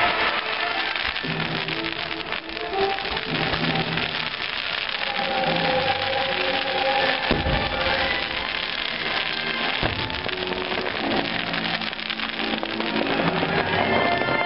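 Aerial fireworks bursting and crackling over loud show music, with sharper bangs about seven and ten seconds in.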